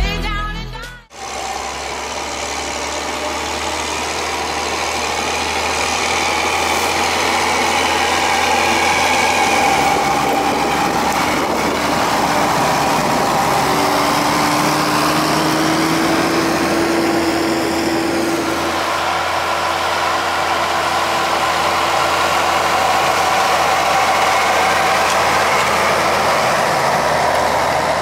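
Massey Ferguson 7480 tractor's diesel engine running steadily while working the field under load, its note rising a little around the middle, after a music track cuts off about a second in.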